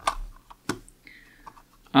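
Small plastic night-light housing being handled, giving two sharp clicks about two-thirds of a second apart, with a few fainter ticks.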